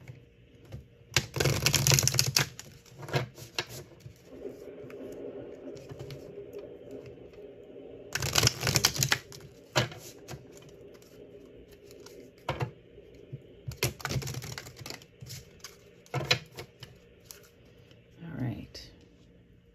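A deck of oracle cards being shuffled by hand: three short bursts of rapid clicking card edges, with scattered single card taps between them.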